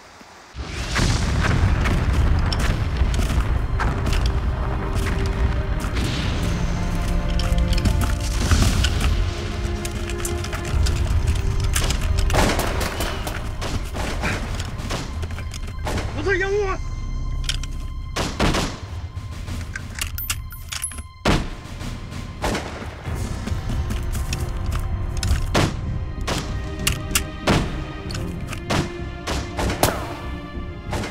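War-film battle soundtrack: explosions and gunfire over a music score. It starts abruptly about half a second in, and sharp shots and impacts keep coming throughout.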